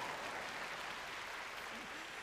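Audience applauding, a fairly faint, even patter that slowly dies down.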